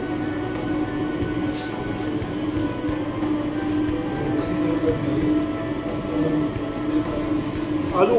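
Steady low machine hum with one strong held tone and several fainter ones above it, and a few faint short clicks, the clearest about a second and a half in.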